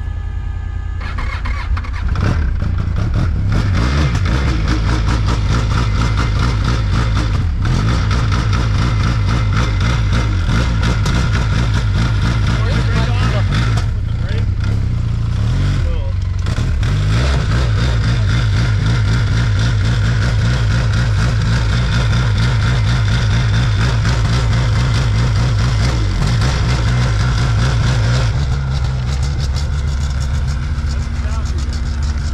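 A vehicle engine running steadily with a low drone, stepping up in loudness about two seconds in and holding there.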